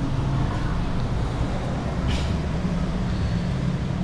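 Steady low background rumble, like distant traffic or building machinery, with one brief soft hiss about two seconds in.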